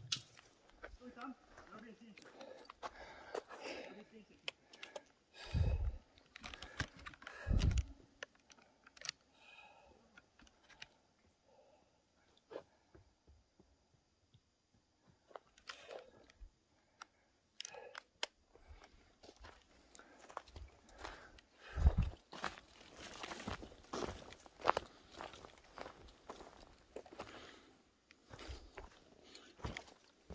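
Footsteps crunching irregularly on dry leaf litter and twigs of a forest floor, with a few dull low thumps. There is a lull of near silence about a third of the way in, and the steps come thickest near the end.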